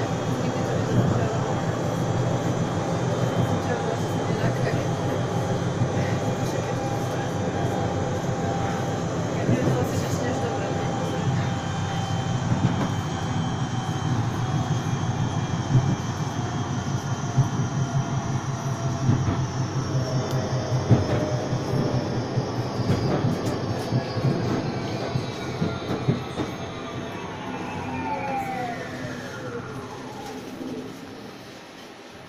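A tram running on street track, heard from inside: a steady rumble of wheels on rail with motor hum and a few knocks. Over the last ten seconds or so, the motor whine falls steadily in pitch and the sound fades as the tram slows.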